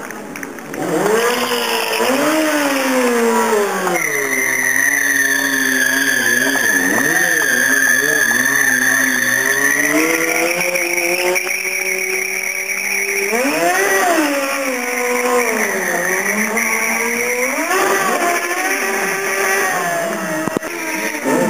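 A stunt sport motorcycle's engine revving up and down repeatedly. In the middle it is held at high revs for several seconds with a steady tyre squeal, as the rear tyre spins in a smoky burnout.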